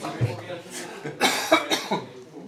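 A man coughing several times in quick succession close to the microphone, amid speech, with a short low thump just after the start.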